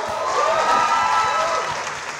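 Audience applause and cheering in a theater, with voices whooping over the clapping; it eases off near the end.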